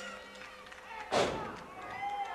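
The ring bell's ringing dies away after a run of strikes. About a second in there is a single dull thud.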